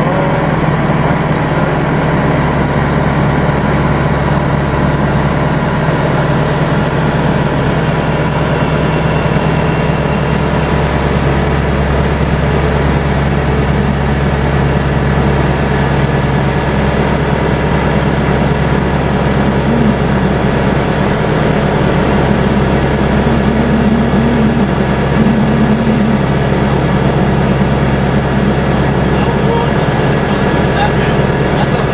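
Light propeller aircraft's engine running steadily, heard from inside the cabin as a constant drone.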